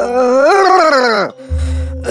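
A cartoon character's wordless vocal whine that rises and then falls in pitch, lasting just over a second, over background music.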